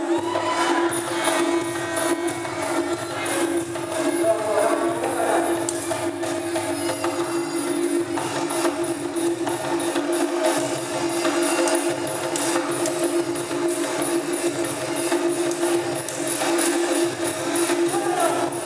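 Thai piphat ensemble playing likay accompaniment: a steady held tone over fast, busy percussion strokes.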